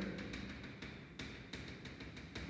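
Chalk tapping and scraping on a blackboard as a graph is drawn: a few faint, sharp taps, about half a second apart, over room tone.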